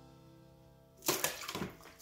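Two plastic water bottles, one empty and one full, dropped into a plastic tub of water, splashing twice about half a second apart starting about a second in. Background music fades out beforehand.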